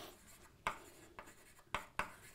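Chalk writing on a chalkboard: a few short, sharp taps and scrapes of the chalk as letters are written, over a quiet room.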